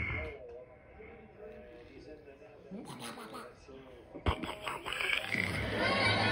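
Faint voices from a television broadcast of a volleyball match, with a sharp click about four seconds in, then arena crowd noise building near the end.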